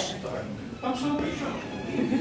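Indistinct voices speaking at a distance from the microphone, quieter and broken up.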